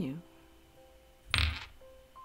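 A single short knock or clatter of something hard, about one and a half seconds in.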